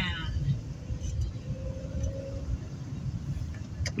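Car interior rumble from the engine and tyres while driving slowly on a wet street, steady and low.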